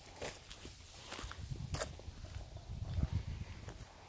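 Footsteps of someone walking on a grass path, heard as uneven soft low thuds with a few light clicks, strongest about two and three seconds in.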